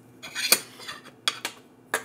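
Metal cutlery, a spoon and a table knife, clinking and knocking against a plate, with a few sharp separate clinks.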